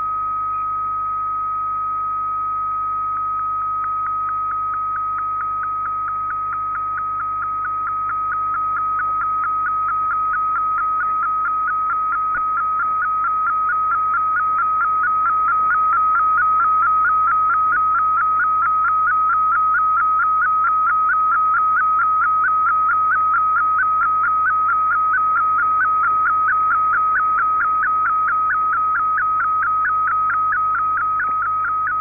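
Shortwave digital-mode picture transmission (fldigi MFSK image) heard through an SDR receiver: a steady whistle-like tone with a fast, even ticking running along it that starts a few seconds in and grows stronger as the image is sent, over a faint hiss of shortwave static.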